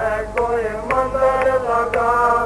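A Hindi devotional shabad (hymn) chanted over sustained accompaniment, with a sharp percussion stroke about twice a second keeping the beat.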